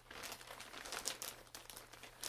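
Plastic mailer bag crinkling and rustling as hands rummage inside it, a run of faint, irregular crackles.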